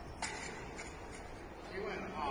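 Faint voices of people talking in a large room, with one sharp click about a quarter of a second in.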